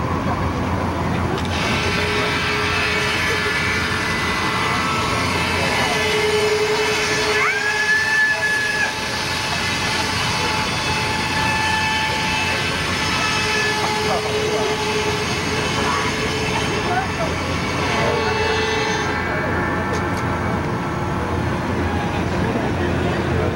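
Magician's large circular buzz saw running: a steady whirring with whining tones. It starts about a second and a half in and cuts off a few seconds before the end, with a short rising whine about seven seconds in.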